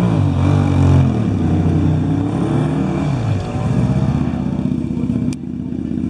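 Motorcycle engine revving at a hill-climb start line. Its pitch rises and falls twice in the first three seconds or so, then it holds at a steady high rev.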